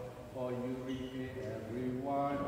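A man's solo voice chanting a psalm verse in long held notes, the pitch stepping up about one and a half seconds in.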